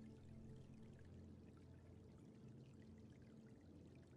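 Faint ambient meditation music with soft held low notes, over a trickle of running water.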